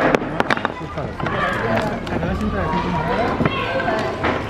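Flat wooden blocks clacking together as they drop into and are handled in a wooden box: a quick run of sharp knocks in the first second, with voices talking around them.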